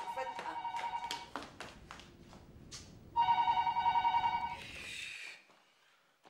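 Telephone ringing with a warbling electronic trill, twice: once at the start and again about three seconds in, each ring lasting about a second and a half.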